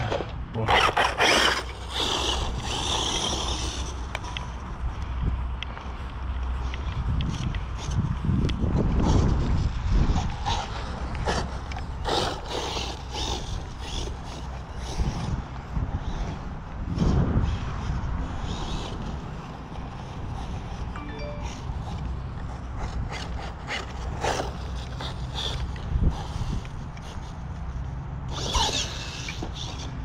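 Arrma Typhon 6S BLX RC buggy driven in bursts across grass: its brushless motor and drivetrain whir up and fall away several times, loudest about a second in and again near the end. Wind buffets the microphone throughout, with scattered knocks.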